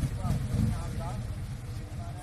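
Motor trike engine running at idle with a low, pulsing rumble, swelling briefly in a short rev about half a second in before settling back.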